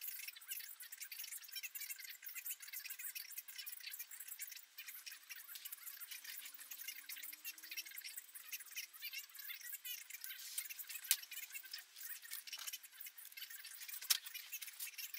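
Faint, busy light clicking and rattling of small metal parts and hand tools being handled, with a sharper click about eleven seconds in and another at the end.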